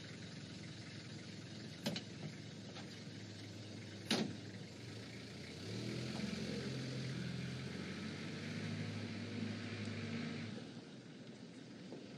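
Car engine running with a sharp knock, like a car door shutting, about four seconds in. The engine then grows louder and changes pitch in steps as the car pulls away, fading after about ten seconds.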